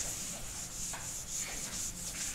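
Whiteboard eraser rubbing across a whiteboard, wiping off marker writing in quick repeated strokes.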